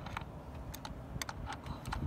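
Light, irregular metal clicks and taps from a socket wrench and long extension being worked into place and turned against the engine's metal parts.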